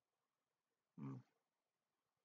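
Near silence, broken about a second in by one short, low "hmm" from a man.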